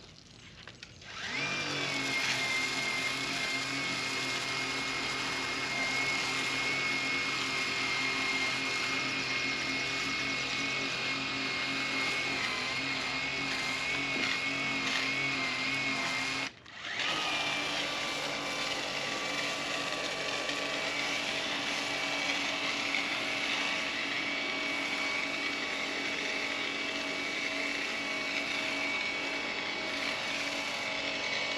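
Worx Hydroshot cordless handheld pressure washer running with a foam cannon attached: a steady electric motor-and-pump whine over the hiss of the spray. It stops briefly just past halfway, then runs on again.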